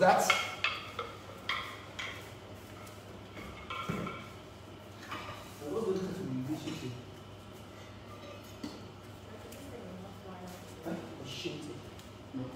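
Light metallic clinks and knocks of hand-held karate weapons being handled during a kata demonstration: several ringing clinks in the first two seconds and a sharper knock about four seconds in.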